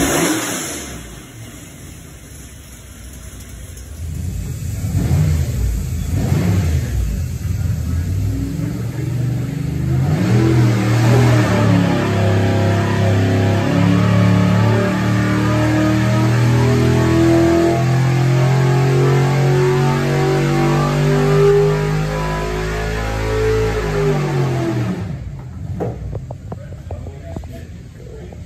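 434-cubic-inch small-block Chevrolet V8 running on an engine dynamometer. It gives a few quick throttle revs, then from about ten seconds in makes a loaded dyno pull, its note holding loud and climbing slowly in pitch for around twelve seconds, before the throttle closes and it drops back toward idle near the end.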